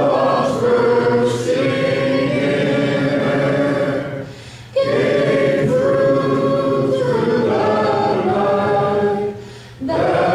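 A roomful of people singing together in unison, holding long notes, with two brief breaks between phrases: one about four and a half seconds in and one near the end.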